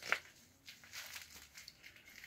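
Soft, scattered rustling and crinkling as an ostomy pouch and clothing are handled, with one brief louder sound right at the start.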